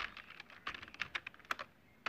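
Computer keyboard typing: a quick, uneven run of key clicks that stops shortly before the end.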